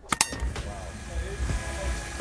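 Two quick sharp clicks of a video transition effect, then the busy background noise of an indoor event hall, with faint distant voices.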